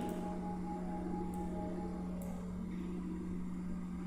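Steady low electrical hum in the recording, with faint higher tones over it and two faint clicks, the first about a second in and the second about two seconds in.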